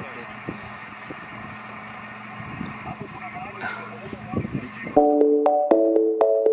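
A vehicle engine running with a low, steady hum under faint, indistinct voices. About five seconds in, background music cuts in suddenly and louder: a bright keyboard melody of short plucked notes in a steady rhythm.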